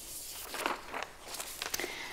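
Rustling with a few light knocks, starting suddenly and running on unevenly.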